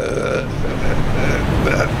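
A man's voice making drawn-out, low hesitation sounds ("eh... eh") while groping for words, with a steady low rumble underneath.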